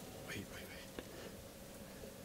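Faint whispering, a few breathy words early on, with a single small click about a second in.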